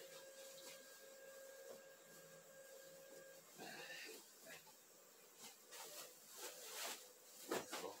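Very faint fabric rustling and a few soft taps as pillows and pillowcases are handled on a bed, mostly in the second half. A faint steady hum runs under the first few seconds.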